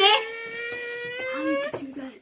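A high voice holding one long hum-like tone, rising slowly in pitch, for most of two seconds. It breaks off into a few short voiced sounds near the end.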